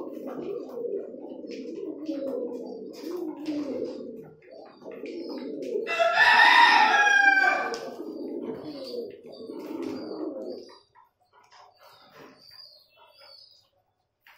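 Domestic pigeons cooing steadily while pecking seed from a plastic tray, with light clicks of beaks on the tray. Midway a rooster crows once, loudly, for nearly two seconds. The cooing stops about three-quarters of the way through, leaving faint pecking and a few high chirps.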